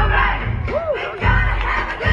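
Amplified show music with a heavy bass line playing over loudspeakers, mixed with an audience of children shouting and calling out along with it; one voice gives a rising-and-falling call partway through.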